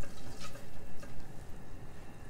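Butter melting with a light sizzle in a stainless steel pot, stirred around with a silicone spatula.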